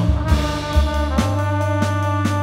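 Live jazz band: the horn section, trumpet with tenor and baritone saxophones, comes in at the start and holds a chord over electric bass and drums, with drum hits about twice a second.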